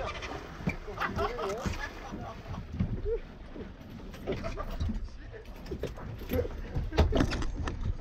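Water rushing and splashing along a small sailing dinghy's hull, with wind buffeting the microphone, broken by a few short voice sounds. Near the end comes a cluster of sharp knocks and clatter against the boat.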